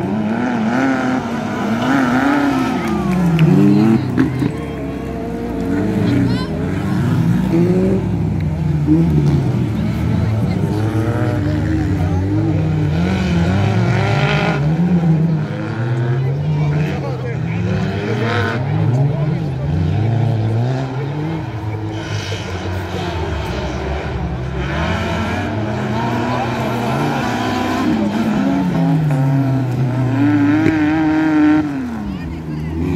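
Off-road racing buggy's engine revving up and down over and over as it is driven round a dirt track, its pitch rising and falling every second or two.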